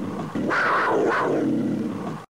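A recorded big-cat roar sound effect, played twice in a row: one roar ends right at the start, and an identical roar begins about a third of a second in and runs to the end.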